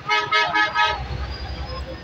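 A vehicle horn toots in a quick, pulsing burst for about a second. A low rumble follows, like traffic.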